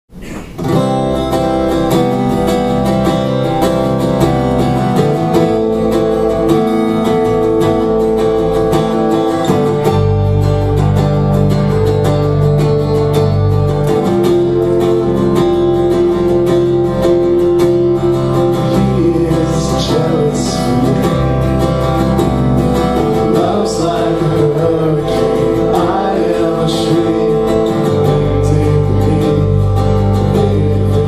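Live band music: strummed acoustic guitar with electric bass and electric guitar holding sustained chords, the bass changing note every few seconds. A man's voice starts singing about two-thirds of the way through.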